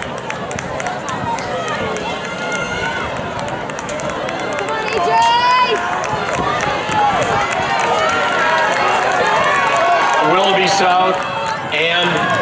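Crowd of spectators talking and calling out, many voices overlapping throughout.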